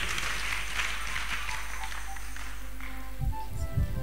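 Church congregation clapping over music. The clapping fades after about two seconds, leaving faint held musical notes.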